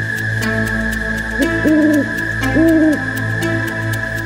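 Cartoon owl sound effect: two hoots about a second apart, each rising, holding and falling, over soft electronic background music with a steady beat.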